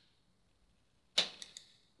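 Near silence, then a little over a second in a short, sharp intake of breath at the microphone that fades within about half a second.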